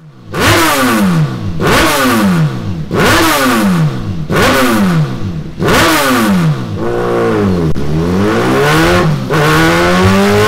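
Suzuki GSX-R1000's inline-four engine breathing through a Delkevic 8-inch carbon fibre round muffler on a full de-cat exhaust, revved on the dyno in five quick throttle blips about a second and a half apart, each rising sharply and falling away. Then comes a longer rev that falls, and a steady climb in revs near the end.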